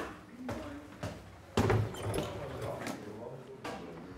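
A door being pushed open, with a dull thud about one and a half seconds in, among a few light footsteps on indoor stairs.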